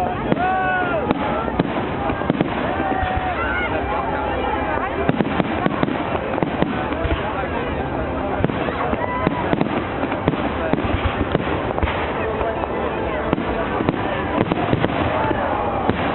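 Aerial firework shells bursting overhead: a run of repeated sharp bangs and crackles throughout, over the steady chatter of a large crowd.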